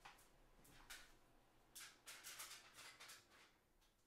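Faint crinkling and rustling of a stainless steel foil heat-treat pouch being handled, in several short crackles, most of them around the middle.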